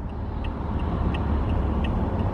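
Steady road and tyre noise inside a moving car's cabin at highway speed: a low, even rumble.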